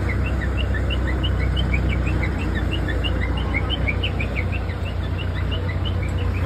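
Many small birds chirping in quick short notes, about four or five a second, over a steady low rumble of outdoor background noise.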